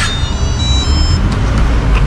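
Electronic key-card door lock chiming a quick run of short high beeps at stepping pitches as the card is read, over a steady low rumble.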